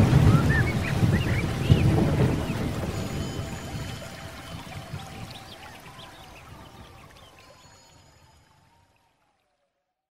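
Closing background soundscape of water-like rushing noise with short chirps over a low rumble, fading out steadily to silence about eight and a half seconds in.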